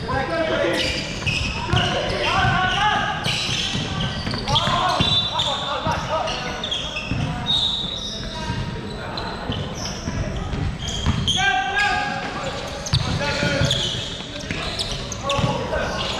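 Indoor basketball game in a large echoing hall: players calling out to each other over a basketball dribbling and bouncing on the hardwood court.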